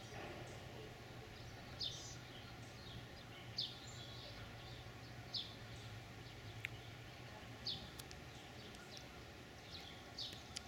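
A bird repeating a short, high chirp about every two seconds, over a faint steady low hum.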